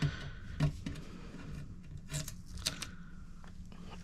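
Blue painter's tape and a plastic stencil being peeled up off an ink-blended card: a few faint, scattered crackles and ticks over a faint steady hum.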